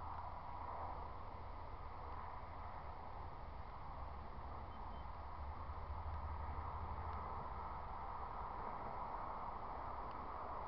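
Steady outdoor background noise: a low rumble under an even hiss, with no distinct event standing out.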